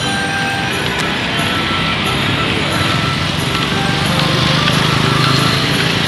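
Busy city road traffic heard from a moving cycle rickshaw: a steady din of vehicles, with short tones at several pitches scattered through it. A motorcycle engine hum grows louder about halfway through.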